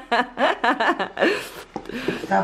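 A person laughing in a quick run of short bursts, mixed with brief unclear talk.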